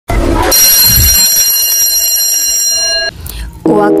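Intro logo sound effect: a brief rushing hit, then a bright ringing chime of several high steady tones held together, which cuts off about three seconds in.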